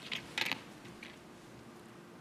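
A few short creaks over a faint steady hum, the loudest about half a second in.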